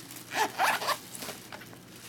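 A zipper being pulled in two short strokes within the first second, followed by quieter handling.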